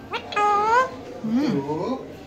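Alexandrine parakeet giving two drawn-out calls. The first rises in pitch; the second is lower and dips, then climbs.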